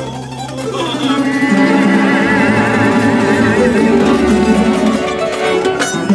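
Live folk music played on tamburica-style plucked string instruments, with a wavering held note in the middle.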